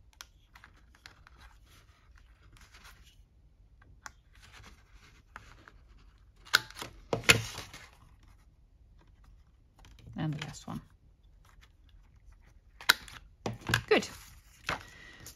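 Plastic corner-rounder punch clicking shut through paper backed with a scrap of scrapbook paper: a few sharp clicks in two groups, one about six and a half seconds in and one near the end, with soft paper handling between.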